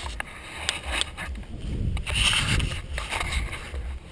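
Handling noise from a small camera being carried and set down: a few knocks and some rubbing and rustling, over a steady low wind rumble on the microphone.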